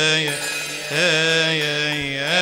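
Men's choir chanting a Coptic hymn in unison, holding long notes with a wavering melismatic ornament about a second in.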